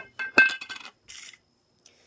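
Lid being unscrewed and lifted off a glass jar: a few sharp clinks of lid on glass with brief ringing in the first second, then a short soft rustle.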